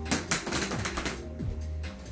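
A plastic LED hula hoop dropping and clattering on a hard floor, a quick run of rattling knocks in the first second with one more near the end, over background music with a steady beat.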